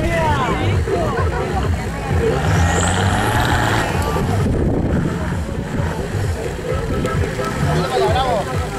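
Nissan Patrol 4x4's engine running under load as it crawls over a dirt mound, revving up with a rising pitch about three seconds in. Voices can be heard alongside it.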